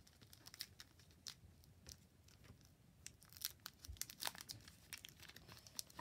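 Faint crinkling and small tearing crackles of a Pokémon booster pack's foil-lined wrapper as fingers pick at its sealed top edge to open it, in irregular short snaps.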